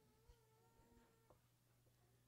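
Near silence: room tone, with a faint steady held tone that cuts off suddenly about a second and a quarter in.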